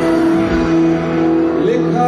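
Live band music played loud through a stadium PA: electric guitars and voice holding long, steady notes, with a sliding note near the end.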